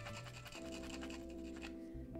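The sharp end of a cello bow's screw scratching at the surface of a new cake of rosin to roughen it so it can be used, the scraping dying away near the end. Soft background music with held notes plays underneath.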